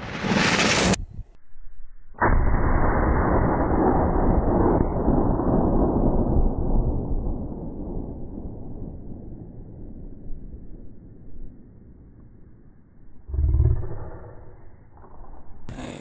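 A 30-06 rifle shot played back slowed down: a deep, dull boom that starts abruptly and dies away slowly over several seconds. A second, shorter low rumble follows near the end.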